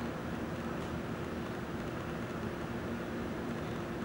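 Quiet, steady room hum and hiss with a faint constant low tone and no distinct events: background room noise between spoken lines.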